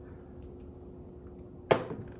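Quiet room tone with a faint steady hum, broken near the end by a single sharp knock of glassware set down on a metal lab bench.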